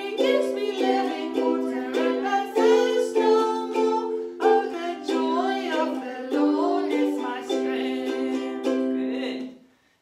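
A small ukulele strummed in chords with a woman's voice singing a simple song along with it; the music stops about half a second before the end.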